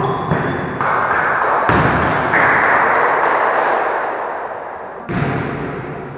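Volleyball thuds echoing in a sports hall: several sharp hits or bounces, the strongest a little under two seconds in and another about five seconds in, over a loud reverberant wash of hall noise that fades away.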